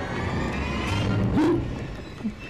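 Horror-film suspense soundtrack from a television: a low rumbling drone that swells toward the middle, with a short upward-gliding tone about a second and a half in, then eases off.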